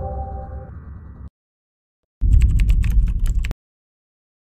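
A Discord-style message notification chime, its tones ringing briefly over a noisy sound clip that cuts off suddenly just over a second in. After a short pause comes about a second and a half of rapid clattering clicks over a heavy low rumble, which then stops abruptly.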